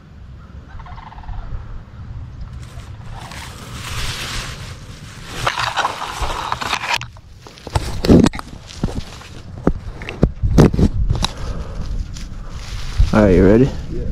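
Dry straw and stubble rustling, with a few sharp knocks a little past the middle, as the camera under the blind cover is shifted, over a low rumble; Canada geese call from the field.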